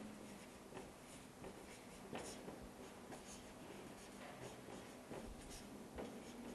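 Marker pen writing on a whiteboard: faint strokes at irregular intervals.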